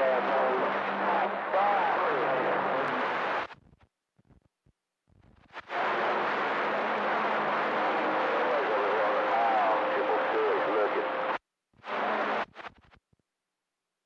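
CB radio receiver on channel 28 passing a loud rush of static with weak, garbled voices and a couple of steady whistling tones buried in it, the sound of distant stations coming in on skip. The signal cuts out to silence about three and a half seconds in, returns about two seconds later, and drops out again near the end after two short bursts.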